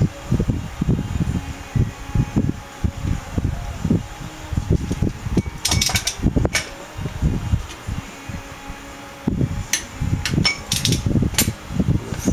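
Wind buffeting the microphone in irregular low gusts. A few sharp metallic clicks come from a wrench and socket on the wheel-bearing adjusting nut, a cluster about halfway through and more near the end.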